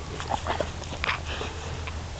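A gun dog breathing close to the microphone, with a few short, irregular breaths or pants and light rustling.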